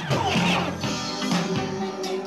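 Club dance music playing.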